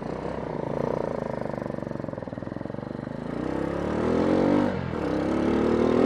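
Motorcycle engine running at low revs, then accelerating: the revs climb, dip at a gear change just before five seconds in, and climb again.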